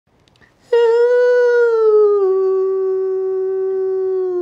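A man singing one long, high held note, starting just under a second in and stepping down slightly in pitch about two seconds in.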